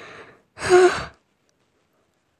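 A person's short, breathy sigh. There is a faint intake of breath at the start, then a single loud exhale with a slight voiced tone about half a second in.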